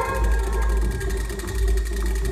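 Electronic music: a loud, deep bass drone swelling in roughly one-second pulses over a steady low hum, while the higher sustained tones thin out.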